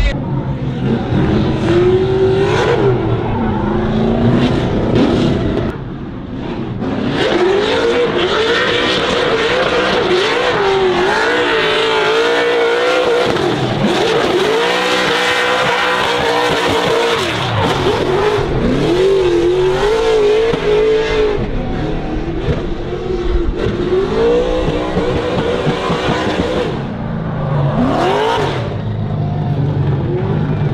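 Nissan 240SX drift car's engine revving hard through a drift run, its pitch rising and falling as the throttle is worked, with a short lift about six seconds in. Tyres spin and squeal under it.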